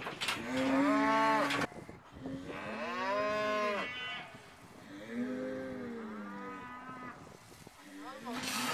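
Bull mooing three times, each a long call that rises and falls in pitch; the third is lower and the longest.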